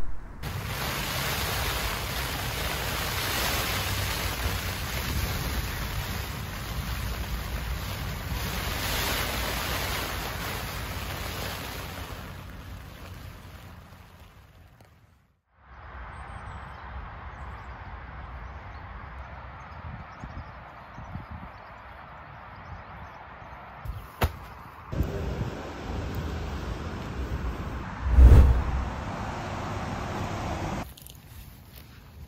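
Heavy rain drumming steadily on a tent, fading out about fifteen seconds in. Then a quieter outdoor hiss, with a couple of sharp knocks and a loud low thump near the end.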